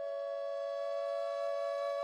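Background music: a flute-like wind instrument holding one long, steady note.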